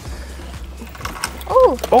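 Fishing reel being cranked with a ratcheting, geared clicking as a hooked walleye is reeled in. A voice exclaims "oh" near the end.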